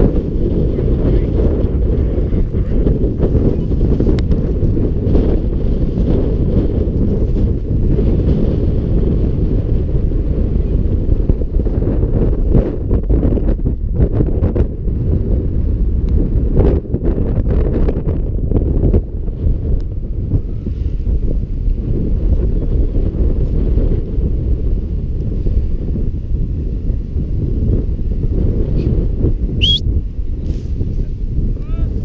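Wind buffeting an action camera's microphone: a steady low rumble with a few faint knocks in the middle, and a brief rising high chirp near the end.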